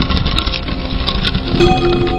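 Intro sound effect: a loud, rumbling whoosh of noise, with a steady ringing tone entering near the end.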